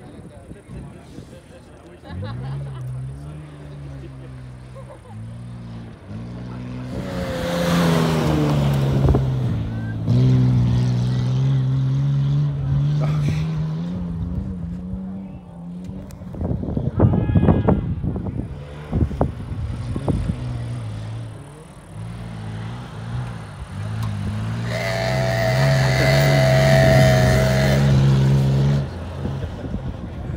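SUV engine (a 1997 Nissan Pathfinder's) racing a dirt course, revving up and easing off again and again as it takes the turns, strongest near the end. A short burst of crackling noise comes in the middle.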